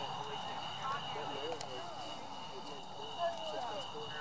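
Horses walking on arena dirt, their hoofbeats a soft clip-clop, under indistinct talking from people nearby. A steady high-pitched tone runs underneath.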